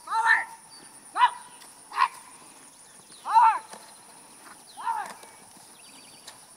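A small dog barking: five sharp single barks at uneven intervals, each rising and falling in pitch.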